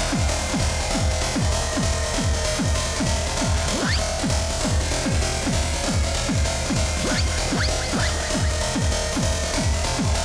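Loopstation beatbox performance: a looped electronic-style beat built from mouth sounds, with a deep, pitch-dropping kick about three times a second under sustained tones. A few rising sweeps come in about four seconds in and again near the end.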